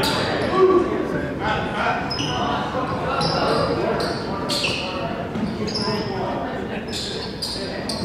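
Basketball gym hubbub: scattered voices of players and spectators echoing in the hall, with short high squeaks of sneakers on the hardwood court and a basketball bouncing.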